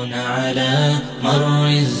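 Arabic nasheed sung in a chanting style, a voice holding long notes that glide from one to the next, with a brief pause just after the first second.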